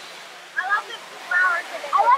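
Water running steadily down a small artificial waterfall over rockwork, with voices talking briefly over it.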